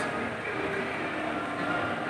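Steady shopping-mall background noise: an even hum with a few faint steady tones and no distinct events.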